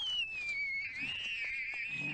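A high-pitched wail that rises sharply, slides down, then wavers before cutting off near the end.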